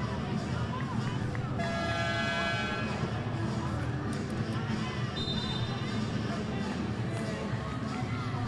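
Arena crowd noise and background music, with an electronic game horn sounding for just over a second near the start, as at the end of a timeout. About five seconds in comes a short, high whistle blast.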